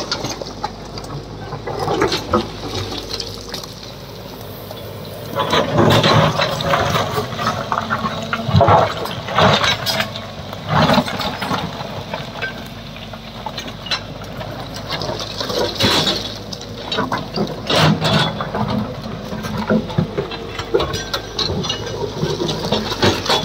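A JCB tracked excavator digging into a rocky slope: loose stones and rubble clatter and slide in repeated noisy surges, loudest from about five seconds in, over the steady low hum of the engine.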